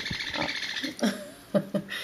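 A small parrot's soft, rapid chatter, a fast buzzing trill that stops a little under a second in, followed by a woman's short "Oh."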